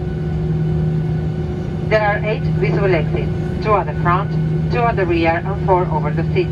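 Steady drone with a low, unchanging hum inside a Boeing 737-800's cabin on the ground. From about two seconds in, a voice speaks over it: the pre-flight safety announcement on the cabin speakers.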